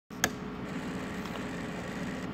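A sharp click just after the start, then a steady low mechanical hum.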